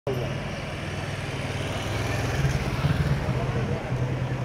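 A police motorcycle and a patrol car pass slowly, their engines making a steady low hum that grows louder about halfway through.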